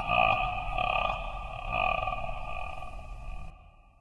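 A sustained drone of several steady tones held together, fading out; the highest part drops away shortly before the end.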